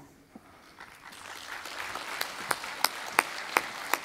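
Audience applause that starts faintly about a second in and builds. Sharp single claps stand out above it, about three a second, over the second half.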